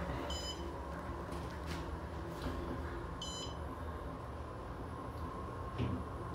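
Otis Series 6 traction elevator car travelling upward with a steady low hum, and a short high electronic beep twice, about half a second in and about three seconds in, as the car passes floors.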